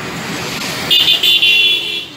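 Outdoor street traffic noise, with a vehicle horn starting about a second in and held steadily.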